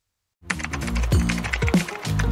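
Silence, then about half a second in, music starts together with a fast run of key clicks: a typing sound effect. The music has repeated short downward-sliding low notes.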